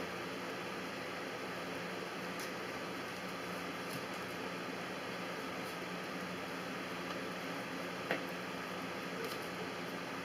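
Steady hiss and hum of room noise, with a few faint clicks of a knife against a plastic cutting board as it works the skin off a prickly pear pad; one sharper click about eight seconds in.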